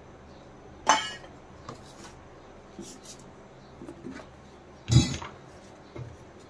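Stainless steel kitchenware clinking: a sharp knock with a short ring about a second in, a few faint taps, and a louder clang near the end, as a steel plate and bowl are handled on a stone counter.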